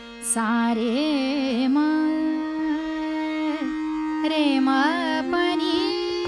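A woman singing a slow Hindustani classical phrase of Raag Madhmad Sarang, holding notes fairly straight and gliding between them, with an accompaniment that sustains the notes beneath her.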